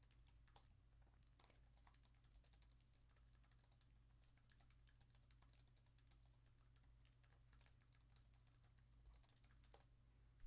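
Faint typing on a computer keyboard: a run of light, irregular key clicks over a low steady hum.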